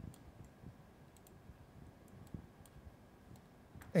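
Faint computer mouse clicks, several of them scattered through a few seconds of low room noise.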